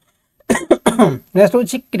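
Silence for about half a second, then a man's voice speaking.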